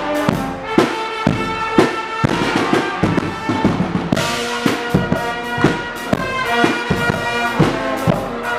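Guggenmusik band playing: trumpets and other brass on loud held chords over a steady beat of bass drum and cymbals.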